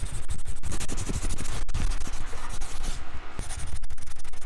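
Pen nib scratching on paper in quick, short sketching and hatching strokes, with a brief lull about three seconds in.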